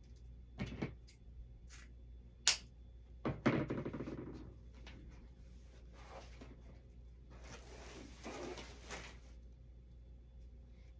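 Ribbon being handled: one sharp click about two and a half seconds in, then rustling of the ribbon, with a second stretch of rustling near the end.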